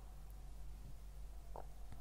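A low, steady background hum in a small room, with one short faint click about a second and a half in.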